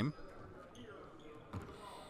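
Faint gym ambience with one soft thud of a basketball on the hardwood court about one and a half seconds in.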